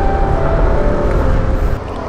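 Yamaha NMAX 155 scooter's single-cylinder engine running under way, mixed with heavy low wind rumble on the camera microphone, with a faint steady whine over it. The sound cuts off near the end.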